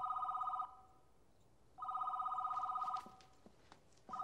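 Desk telephone ringing with a rapidly pulsing electronic trill. A ring ends just after the start, and another ring lasting about a second comes near the middle.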